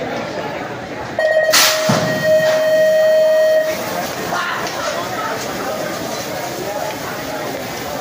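BMX starting gate's electronic start cadence: a few quick beeps, then one long steady tone of about two seconds. A sharp metal knock at the start of the long tone is the gate slamming down to release the riders, followed by a low rumble of bikes rolling down the ramp.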